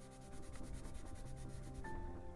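Brown colored pencil scratching across paper in quick, short back-and-forth strokes, about ten a second, while lining the edge of a drawing.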